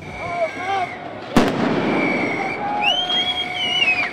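A single sharp bang from a firecracker thrown in a protest crowd, about a second and a half in, among the crowd's shouting and shrill whistling.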